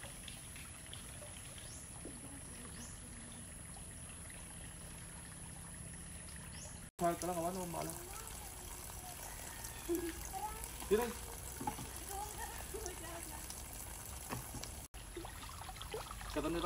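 A faint, steady trickle of running water. In the second half, voices talk sporadically over it.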